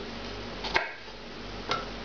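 Two light knocks about a second apart as garlic cloves are dropped into a stick-blender beaker onto chopped onion and pepper, over a steady low room hum.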